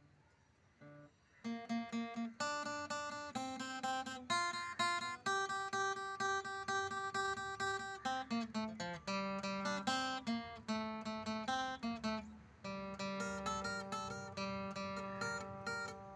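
Cutaway acoustic guitar played solo: after a quiet start, a melody of picked notes over chords begins about a second and a half in and runs on without pause.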